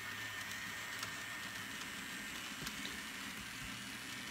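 TT scale model trains running on the layout: a quiet, steady whirring hiss of small locomotive motors and wheels on the rails, with a thin steady high whine and a few faint ticks. The MTB SW1200 on the outer track runs noisily, a fault its owner has not found the cause of.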